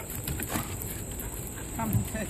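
Two dogs play-wrestling on gravel: faint scuffling, with a short vocal sound near the end.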